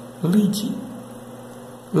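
A man's voice saying one short word, "lead", about a quarter second in and starting it again right at the end, over a steady electrical mains hum.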